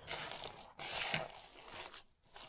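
Hands kneading and squishing a wet raw ground-venison meatloaf mix in a mixing bowl: squelching and scraping in two stretches, with a short break a little under a second in.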